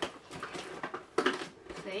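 Toy packaging being pulled open by hand, a glued flap giving way with a series of crackles and clicks, one sharper snap just past a second in.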